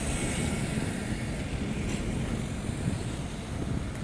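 Street traffic noise: a car driving along the road toward the camera, with a low wind rumble on the microphone.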